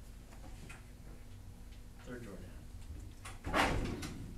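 A cabinet drawer being slid, heard as one short loud noise about three and a half seconds in, with faint voices in the room before it.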